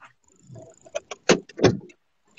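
A quick series of about five sharp knocks and clicks inside a car, over low rustling, as things in the cabin are handled.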